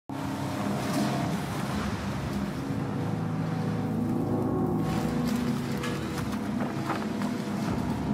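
Trailer soundtrack: a low, sustained drone of held tones under a steady wash of atmospheric noise, with a brief gliding tone about halfway through and a few faint clicks near the end.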